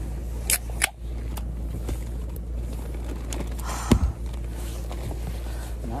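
Aluminium soda can being opened by its pull tab: sharp clicks about half a second in, then a louder click with a short fizzing hiss about four seconds in, over a steady low rumble.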